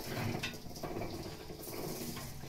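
Hand-cranked cast-iron sugarcane press turning, its gears and rollers crushing a stalk of cane: a faint, uneven mechanical sound with a few soft clicks.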